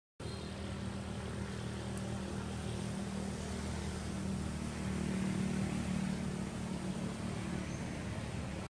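Motor-vehicle traffic from a nearby road: a steady low engine drone over a wash of road noise, growing a little louder past the middle as a vehicle goes by. The sound drops out for a split second at the very start.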